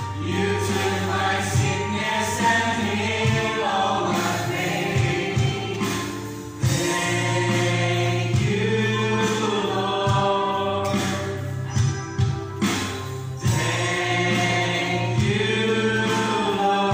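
Worship team of male and female voices singing a slow gospel praise song together through microphones, with sustained phrases over electronic keyboard accompaniment holding a steady bass.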